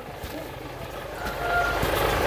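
Low engine rumble from a motor vehicle, growing steadily louder through the second half.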